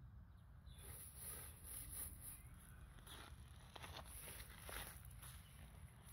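Faint, irregular crunching and scraping of loose gravel as a small child's hands rake and push the stones.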